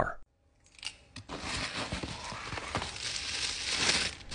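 Tissue paper rustling and crinkling as it is unwrapped by hand. It starts about a second in, after a short silence, and grows a little louder toward the end.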